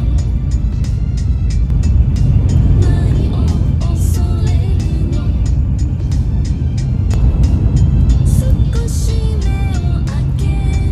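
Steady low rumble of a Shinkansen bullet train running, heard from inside the carriage, with background music playing over it.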